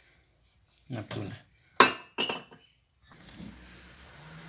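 Kitchenware clinking: one sharp, ringing clink about two seconds in, with a lighter clatter just after, then faint room noise.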